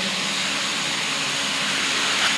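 A steady, even rushing hiss with no speech, holding at one level throughout.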